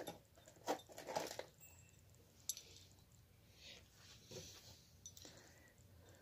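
Faint handling noise: a few soft clicks and rustles as a tiny drone's LiPo battery and a USB charging lead are picked up and fitted together.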